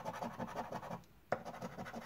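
A coin scraping the scratch-off coating of a paper lottery scratch card in quick back-and-forth strokes. There are two runs of scratching broken by a short pause about a second in, and the second run starts with a sharp tick.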